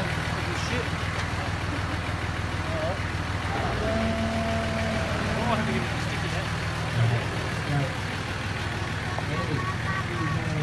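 Four-wheel-drive truck engine running steadily at low revs, a constant low drone, with a short louder blip about seven seconds in. Voices can be heard over it.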